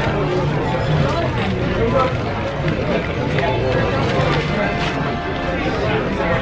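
Background chatter of many voices in a restaurant dining room, steady and overlapping, with no one voice standing out.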